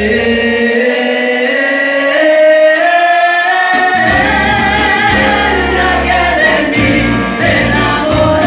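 Live cumbia band with a male lead singer holding long, rising sung notes over keyboard. The bass and drums drop out for a few seconds, then the full band with accordion and percussion comes back in about four seconds in.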